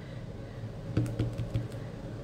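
A quick run of light taps and clicks from a clear acrylic stamp block being handled against the table and work surface, starting about a second in, over a low steady hum.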